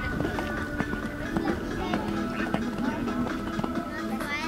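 Music with steady held tones, and over it the faint, irregular thuds of a horse's hooves cantering on sand.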